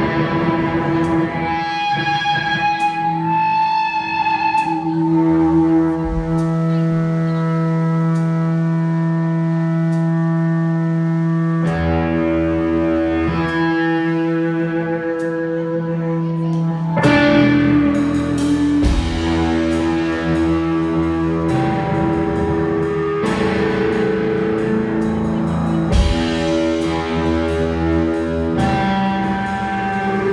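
Loud live electric guitar played with distortion and effects, holding long sustained notes and chords that shift every few seconds.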